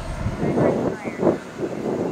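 Distant turbine engine of an RC T-45 Goshawk model jet flying overhead, a steady rushing noise, with indistinct voices in the middle.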